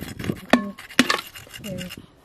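An old clay pot being struck and broken: two sharp ceramic knocks about half a second apart, the first ringing briefly.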